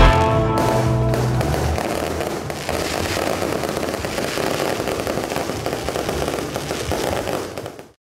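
Aerial fireworks crackling, a dense run of fine crackles and pops that fades out near the end. A music track's last notes die away in the first second or two.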